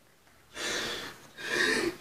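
A man crying: two loud, breathy gasping sobs, the first starting about half a second in.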